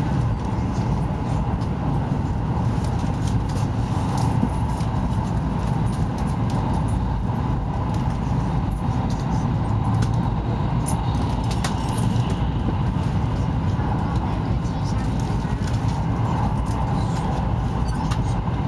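Steady low rumble and rush of a Taiwan High Speed Rail 700T train running at speed, heard inside the passenger cabin.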